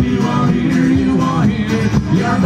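Live Irish folk music: two acoustic guitars strummed, with a bodhrán frame drum keeping the beat.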